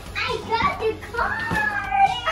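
Young children's high-pitched voices while they play, including a long held call from about a second in.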